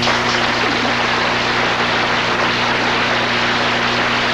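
Studio audience applauding steadily after a short sung phrase.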